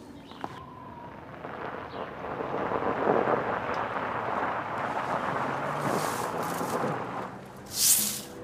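A car driving along a snow-covered road: a steady rumble of engine and tyres that swells around the middle. A short, loud whoosh comes at the very end.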